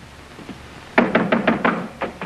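Rapid knocking on a door: after a quiet second, a quick run of about five knocks.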